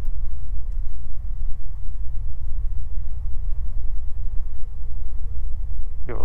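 Cabin noise of a Beechcraft G58 Baron rolling out on the runway after landing, its two Continental IO-550 engines and propellers at low power: a steady low drone with a faint steady hum above it.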